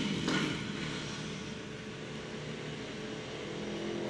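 Several go-kart engines running as the karts race around a dirt track. The sound fades somewhat in the middle and grows louder near the end as the pack comes back toward the microphone.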